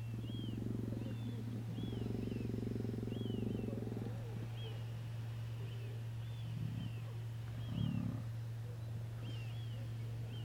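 Sea lions growling: a long, pulsing growl lasting about four seconds, then two short growls near seven and eight seconds in. Under it runs a steady low electrical hum, and short high chirps repeat about once a second.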